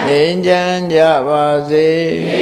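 A man's voice chanting a Buddhist verse line, held notes sung in a drawn-out melodic line that dips in pitch about midway and rises again.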